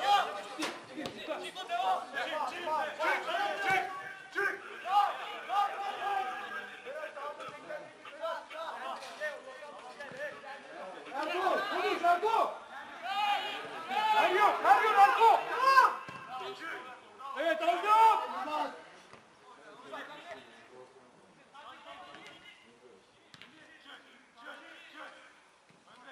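Indistinct voices shouting and calling out during a football match, loudest in the middle and dropping to faint chatter for the last several seconds.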